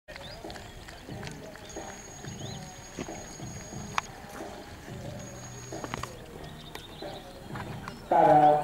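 Faint outdoor arena ambience: distant background music and voices with scattered sharp clicks, the loudest a single knock about four seconds in. A thin, high, steady tone sounds twice, first for about two seconds and later for about one.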